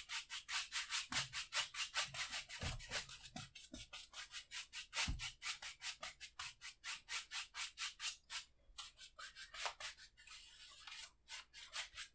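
A wide bristle brush scrubbing oil paint onto a stretched canvas in quick crisscross strokes, about four scrapes a second. There are a couple of soft low bumps, and the strokes briefly slacken near the end.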